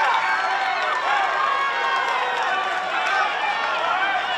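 Many voices shouting and talking over one another: players and spectators reacting to a scuffle on the pitch around a downed player.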